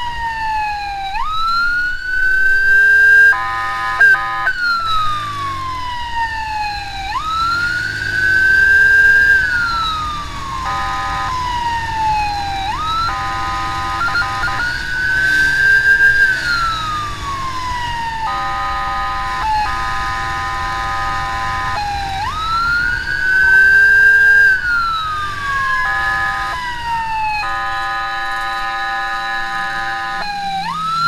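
Electronic emergency siren wailing close by: each cycle jumps up quickly in pitch and then falls slowly, repeating about every five to six seconds. The wail is broken several times by steady horn blasts, the longest lasting a few seconds.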